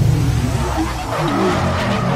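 A loud intro sound effect over music, a noisy rushing sweep like a revving car. Its deep part thins out about halfway through.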